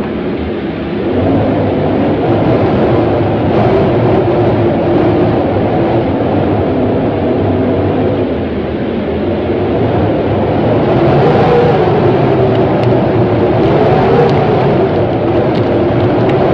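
A loud, steady rumbling drone whose pitch slowly wavers up and down.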